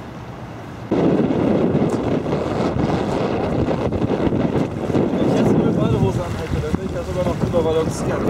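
Strong storm wind buffeting the camera microphone, starting suddenly about a second in and gusting unevenly throughout.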